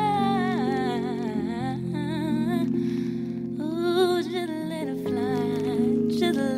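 A slow ballad: a high voice sings long, wavering phrases with vibrato over sustained chords.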